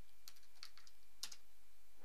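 Faint computer keyboard keystrokes: a handful of separate key taps, with a slightly louder pair about a second and a quarter in.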